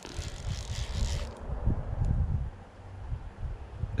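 Wind buffeting the camera's microphone, a low uneven rumble, with a brief hiss during the first second and a half.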